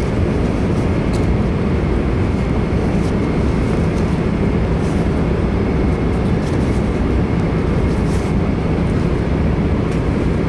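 Steady low roar of an airliner cabin in flight, engine and airflow noise, with a few faint clicks from something being handled.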